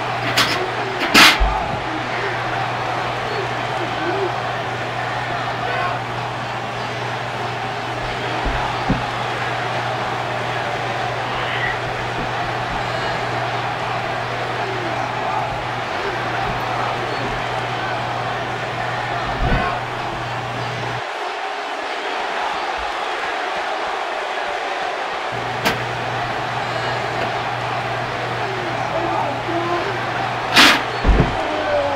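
Steady background hiss with a low hum, broken by a few sharp thumps, the loudest about a second in, with others spread through and a pair near the end.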